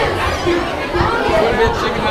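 Indistinct chatter of several people talking at once, a steady babble of voices with no words standing out.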